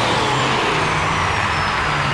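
Animated sound effect of a futuristic F-Zero racing machine speeding along the track: a loud, steady rushing whoosh with a thin whine that slowly falls in pitch.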